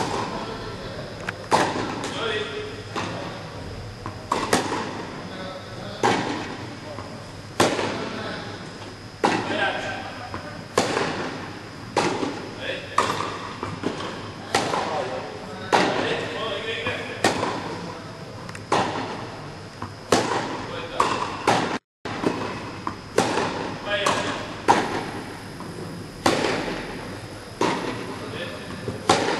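Tennis rally: a ball struck back and forth by rackets, with its bounces on the court, a sharp hit about every second and a half. Each hit rings on in the echo of a large indoor tennis hall.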